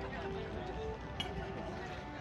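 Bagpipe music: held notes that step from one pitch to another over a steady drone. A single sharp click sounds about a second in.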